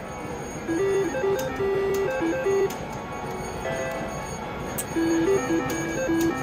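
Double Top Dollar slot machine playing a short electronic tune of beeping notes as its reels spin, twice: about a second in and again near the end, over steady casino background noise.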